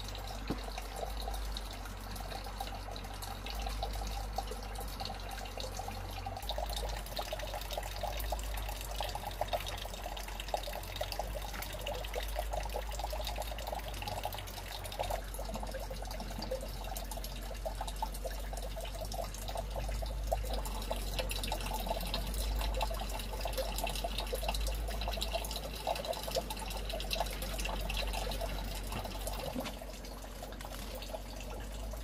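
Steady running, trickling water, unbroken, with many small crackles through it.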